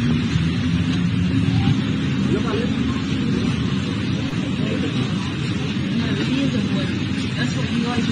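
Outdoor street noise: a steady low rumble with indistinct voices of people nearby.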